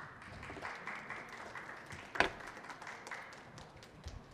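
Audience applauding, dying away near the end, with one louder clap about two seconds in.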